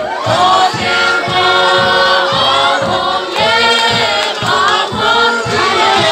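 A crowd of voices singing together, with a steady low beat of about two to three strokes a second underneath.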